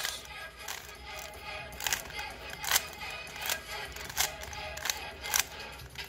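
Plastic layers of a 3x3 speed cube being turned in quick succession, each turn a sharp click, about three every two seconds, as an algorithm is executed. Faint background music runs underneath.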